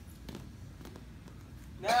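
A few faint, short scuffs and taps of wrestling shoes on a foam mat as two wrestlers step and reset, over low room noise. A man's voice starts near the end.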